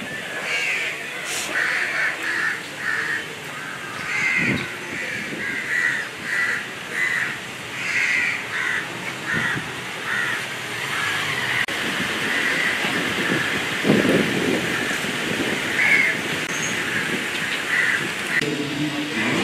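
Birds calling over and over, short calls coming about one or two a second, with a few low thuds beneath them.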